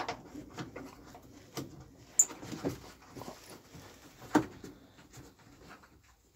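Hands working around a plastic vehicle heater box: scattered light clicks, knocks and rustling, with a sharp click about two seconds in and a knock a couple of seconds later.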